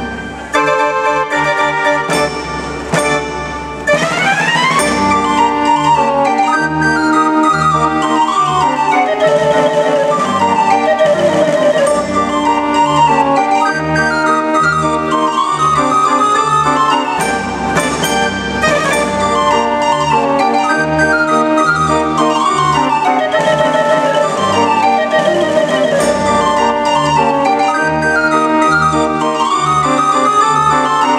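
Dutch street organ (draaiorgel) playing a tune from folded cardboard book music. A few broken chords open it, a quick rising run follows about four seconds in, and then the melody pipes carry on over a regular oom-pah bass and accompaniment.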